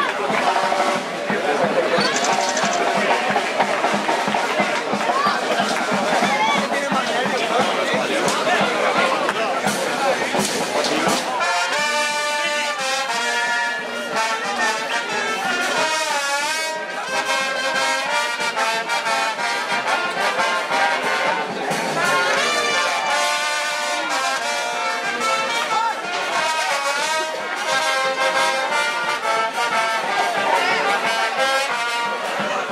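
Crowd voices and shouts, with brass band music coming in clearly about eleven seconds in and playing on under the crowd.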